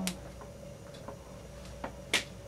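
A power plug clicks into a wall outlet as a neon sign transformer is switched on, followed by a few faint, scattered ticks.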